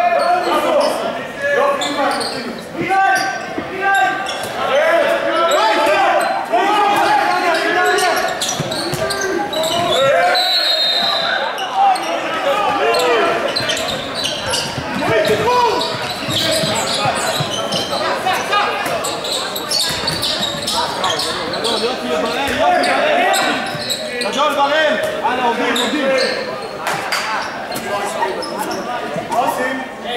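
A handball bouncing and thudding on a wooden sports-hall court during play, with players' and spectators' voices shouting. The sound echoes around the large hall.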